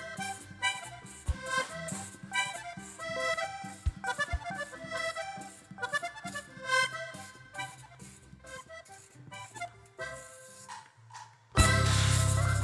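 Vallenato band playing live: accordion running a melody over electric bass and guitar. The playing thins out near the end, then a sudden loud final hit with a held chord comes in.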